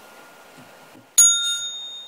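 A bell struck once, about a second in, with a bright, high ring that fades away over about a second.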